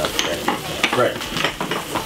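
Ackee, peppers and onion frying in a wok, sizzling steadily with frequent irregular crackles and pops.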